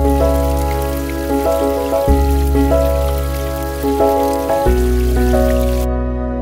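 Gentle background music of sustained keyboard chords over a bass line that changes twice. A steady, rain-like hiss lies over it and cuts off suddenly just before the end.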